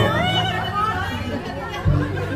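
Several people's voices talking and calling out over one another, with a single thump near the end.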